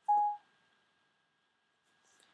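iPad dictation tone: a single short beep, about a third of a second long, as the microphone key is pressed again to end dictation.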